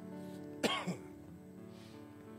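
Quiet, sustained music chords held steadily, with a person briefly clearing their throat about half a second in.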